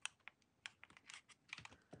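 Faint, irregular light clicks and taps, about a dozen in two seconds, from a dotting tool and small plastic resin cup being handled against a silicone mold.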